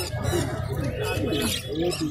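Caged birds calling: a string of short, repeated low calls with a few higher chirps, over a background of voices.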